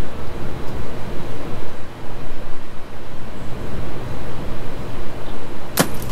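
Steady low background noise, then near the end a single sharp crack as a thrown dart strikes a computer monitor and shatters its screen.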